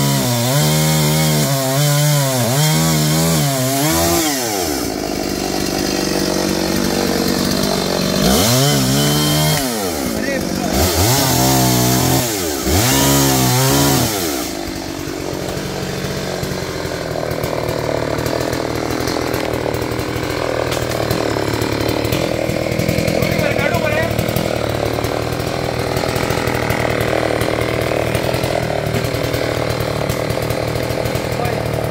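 Chainsaw cutting through a fallen tree limb, its engine pitch rising and falling again and again under load, in three spells over the first half. After that comes a steadier, noisy background.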